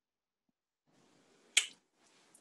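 Near silence, then a faint hiss and a single short, sharp click about one and a half seconds in.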